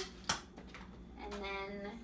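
A sharp click about a third of a second in, from the luggage scale strap's buckle snapping shut, followed later by a woman's drawn-out hesitation sound.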